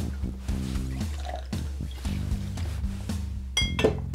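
Cointreau poured from the bottle into a glass mixing glass over background music, with a short ringing glass clink near the end.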